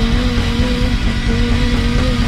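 Live rock band playing loudly with no vocals: an electric guitar riff holds one note for most of a second and repeats it with short breaks, over bass and drums.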